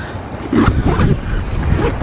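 Strong wind buffeting the microphone, with a fabric backpack being handled and a pocket zipper worked.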